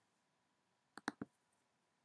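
Near silence broken about a second in by a quick pair of sharp clicks, a computer click advancing the slideshow.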